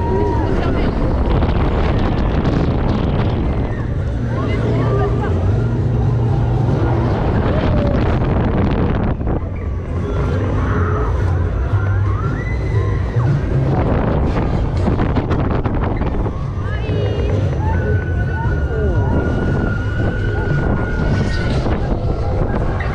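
Wind buffeting an action camera's microphone as an inverting fairground swing ride sweeps through the air, with riders screaming and shouting over it.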